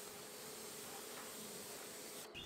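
Faint steady hiss of a hose spray nozzle rinsing water onto a car wheel, with a thin steady hum beneath it.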